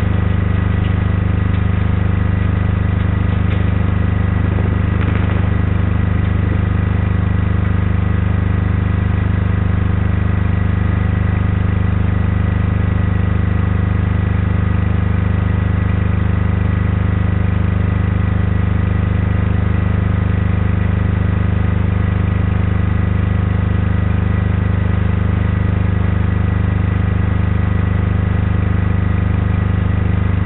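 Steady mechanical hum: a strong low drone with several constant higher pitches over it, swelling and easing slightly in level without a break.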